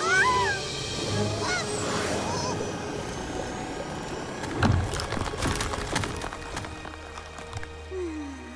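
Cartoon soundtrack: background music with short, squeaky gliding calls in the first two seconds or so, then a couple of sharp hits about five seconds in.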